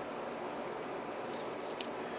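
Faint small ticks of a thin wire being worked through a brass carburetor emulsion tube to clear its clogged passages, with one sharper click near the end, over a low steady hiss.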